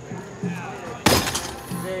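A wooden-handled mallet striking a high striker's strike pad about halfway through, a single sharp metallic clang that rings briefly.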